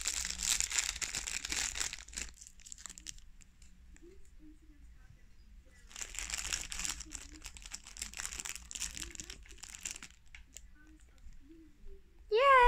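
A plastic bag of Maltesers crinkling and crackling as it is handled and opened, in two bouts: one in the first two seconds and another from about six to ten seconds in.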